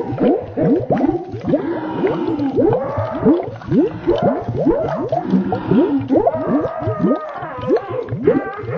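A boy's manic laughing, slowed far down and warped by audio effects into a continuous stream of rapid, swooping rising and falling pitches.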